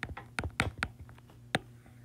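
Stylus tip clicking on an iPad's glass screen during handwriting: about five short, sharp ticks, the last and loudest about one and a half seconds in, over a faint steady hum.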